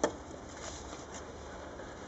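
A single sharp click at the start, then faint rustles over a steady low background while a beehive comb frame is handled and brushed with a feather.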